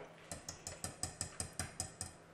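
Wire whisk beating a thick béchamel-and-egg-yolk soufflé base in a stainless steel saucepan, its wires clicking lightly against the pan in a quick, even run of about seven taps a second.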